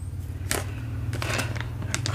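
Cross-stitch chart packets being handled, giving a few light clicks and rustles over a steady low hum.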